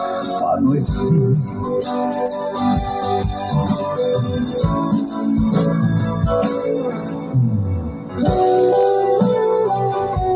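Live band playing an instrumental passage of a slow song, led by acoustic guitar with keyboard and drums; the music eases off briefly about eight seconds in, then picks up again.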